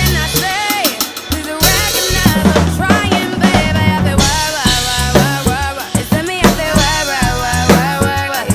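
Acoustic drum kit played as a groove of kick, snare and cymbals over a pop backing track with a sung vocal line. The low bass briefly drops out about a second in.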